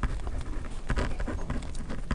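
Pen writing on paper: a run of quick, irregular small taps and scratches as the letters are drawn.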